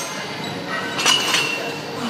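A couple of ringing metal clinks from a cable crossover machine about halfway through, as the cables and handle fittings move through a cable fly rep.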